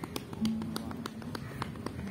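Informal acoustic guitar playing with a fast, even run of sharp percussive taps, about six a second, under a low held note.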